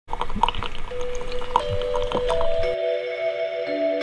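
Water pouring and dripping through a pour-over coffee dripper, with many small drips, for nearly three seconds before it cuts off abruptly. Ambient music with long held tones comes in about a second in and is left on its own after the cut.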